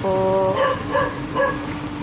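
A dog yipping: three short barks about half a second apart, over a steady low hum.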